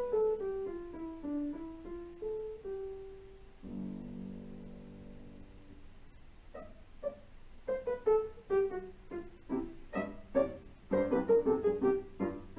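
Piano accompaniment music: a descending run of notes, then a soft held chord about four seconds in, then short, detached notes picking up again from about six seconds.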